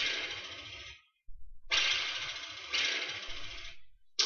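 Soundtrack of a facade video-mapping show, recorded on a phone and played back in the room: three sudden noisy hits that each fade away, with a brief silence about a second in.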